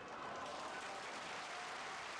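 Faint crowd applause in a sumo arena as a bout ends: an even patter of clapping that rises a little just after the start and then holds steady.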